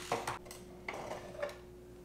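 A few faint clicks and a light clatter of plastic RC drift car parts being handled: a car is set down and another is picked up off a shelf.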